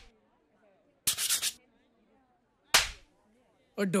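Two short swishes in otherwise near silence: a quick flurry of swishes about a second in, then a single swish a second and a half later.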